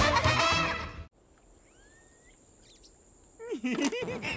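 A cartoon theme tune ends about a second in, followed by near silence with a faint high steady tone. Near the end comes a short burst of quick wavering, warbling pitched sounds.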